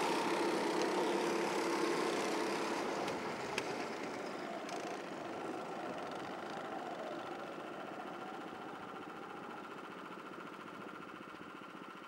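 Honda Pro-kart engines running out on the circuit, the sound slowly fading as the karts move away.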